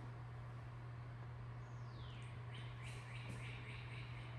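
Faint bird song: one falling whistle, then a quick run of about four short chirps, over a steady low hum.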